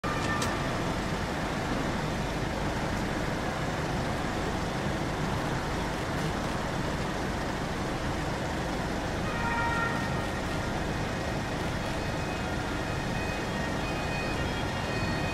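Steady city road-traffic noise. About nine and a half seconds in, faint steady siren tones come in over it.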